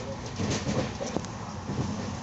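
Steady rumble and rattle of a moving train heard from inside the coach, with a few brief low pitched sounds over it in the first second.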